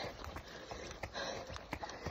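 Faint footfalls of a runner in wet, squelching shoes on a dirt trail: soft, irregular steps.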